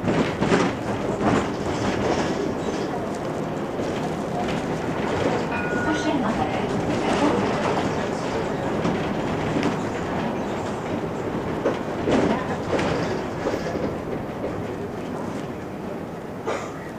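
Interior ride noise of an articulated Mercedes-Benz Citaro G C2 NGT natural-gas bus under way: steady road and engine rumble with interior rattles and clatter. A brief high beep sounds about six seconds in.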